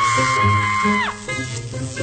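A woman screams one long, high scream lasting about a second, over background music with a steady bass beat. The scream breaks off abruptly and the music carries on.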